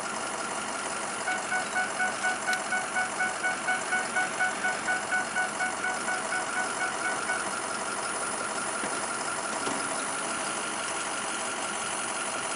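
Vehicle engine idling steadily, with a rapid pulsed beeping tone, about four beeps a second, from about a second in that stops a little past halfway.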